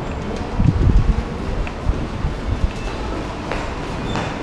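Steady low rumble with a cluster of muffled low thumps about a second in and a few more around two seconds.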